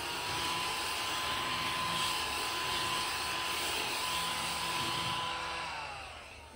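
Tihoo battery-powered mini desk vacuum running steadily with a motor whine and airy hiss as it sucks eraser crumbs off a desk. Its motor winds down near the end.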